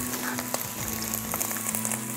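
Pljeskavica (ground-meat patty) sizzling and crackling in hot oil in a cast iron frying pan, with a faint steady low hum underneath.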